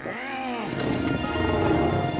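A brief strained growl from a cartoon creature, then dramatic background music that swells slightly.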